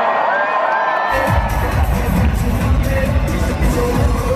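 A DJ's dance track played loud over an arena sound system, its heavy bass beat coming in about a second in, with a large crowd cheering and whooping over it.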